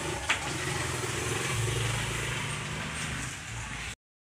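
A steady low machine hum under a broad noise, with one sharp click shortly after the start; the sound cuts off abruptly at the end.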